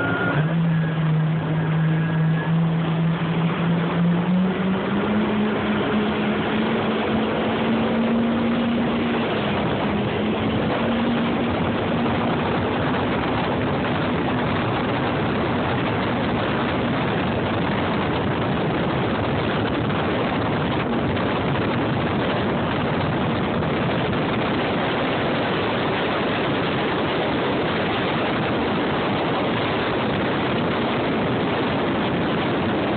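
Jet ski engine running at speed, its pitch climbing over the first ten seconds or so as it accelerates. It then sinks into a loud, steady rush of wind and water noise.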